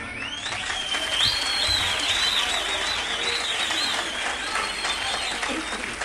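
Audience applauding after a live song ends, with a high wavering whistle over the clapping.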